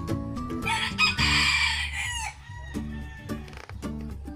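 A rooster crows once, about a second and a half long, over background music with plucked notes.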